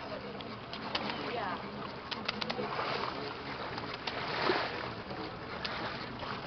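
Sea water sloshing and splashing against a wooden fishing boat's hull and a net hanging in the water, with a few sharp knocks and a louder splash about four and a half seconds in.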